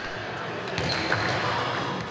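A basketball bounced on a wooden sports-hall court, with people talking in the background and the sound echoing in the large hall.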